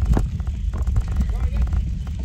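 Wind buffeting a phone microphone on a moving bicycle, a heavy low rumble, with one sharp click a fraction of a second in.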